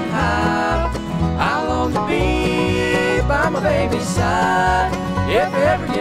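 Bluegrass band playing live, with upright bass, fiddle, mandolin, banjo and guitar under voices singing a chorus in harmony.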